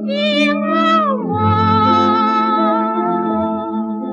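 A 1932 Pathé 78 rpm record of a woman singing a Chinese popular song, played on a wind-up gramophone. She holds high notes with vibrato, slides down about a second in, then holds a lower note over steady instrumental accompaniment.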